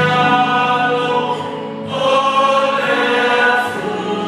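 A choir singing a Samoan hymn, many voices held together in long phrases, easing off briefly a little under two seconds in before the next phrase.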